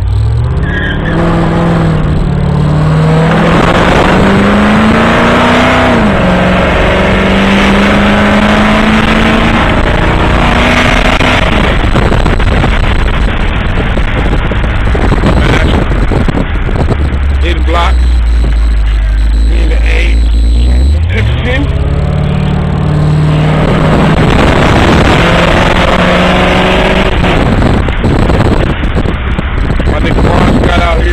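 Loud car engine and exhaust heard from inside the cabin, accelerating hard through the gears: the pitch climbs and drops back at each gear change. About eighteen seconds in it settles to a low rumble, then revs up and climbs through the gears again.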